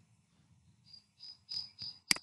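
A cricket chirping faintly: four short, high chirps at one steady pitch in the second half, about three a second.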